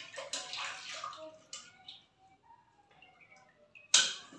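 Hands splashing and swishing in water in a steel bucket, rinsing off dough after kneading, mostly in the first second and a half; a sharp metal knock right at the end.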